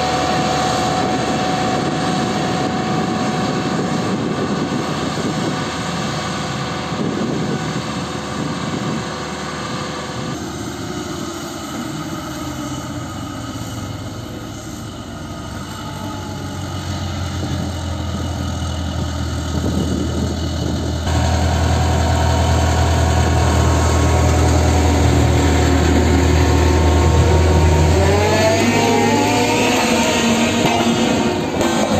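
Diesel engines of road-paving machinery, a Caterpillar vibratory road roller among them, running steadily, with a deep drone through the second half. The sound changes abruptly twice, about a third and two-thirds of the way through.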